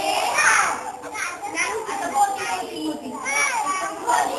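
A group of young children's voices, chattering and calling out over one another with high-pitched voices, as an audience at a puppet show.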